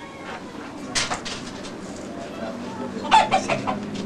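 Chickens clucking, with a sharp knock about a second in and a short run of high clucks near the end.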